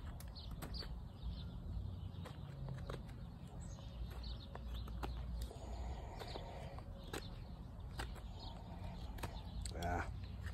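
Blade cuts into a birch spoon blank being roughed out: sharp, irregular clicks about once a second over a low rumble of wind and handling on the microphone. Faint bird chirps sound behind, and a short voiced murmur comes right at the end.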